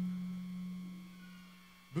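A steady low hum on one pitch, fading away gradually over about two seconds.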